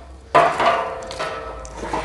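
Pieces of wood clattering against a metal drum grill while the fire is stoked: one sudden rattle about a third of a second in, with a metallic ring that fades away over about a second and a half.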